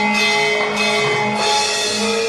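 Javanese gamelan music accompanying a dance: held, ringing metallophone tones over a steady beat of drum and percussion strokes.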